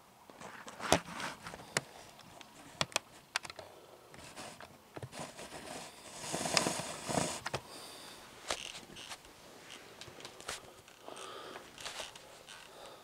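Cotton sock and sweatpant fabric rustling and scraping against a wooden floor as the foot shifts, with scattered light clicks and a longer rustle about six seconds in.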